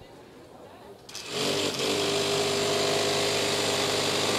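FRC competition robot's intake and conveyor rollers switching on about a second in and then running steadily: electric motors whining with a hum of rows of spinning compliant wheels, as a foam power cell is drawn in.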